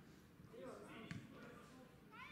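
Faint, distant voices on a football pitch, with a single sharp thud a little over a second in: a football being kicked.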